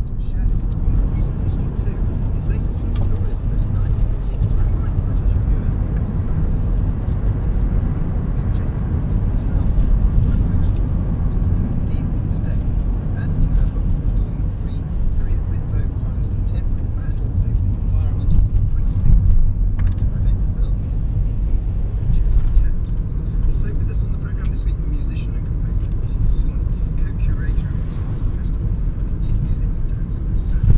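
Steady in-car rumble of engine and tyres from a car driving along a road, with a radio talk station faintly audible underneath.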